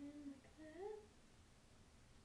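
A person humming two short notes within the first second, the second gliding upward.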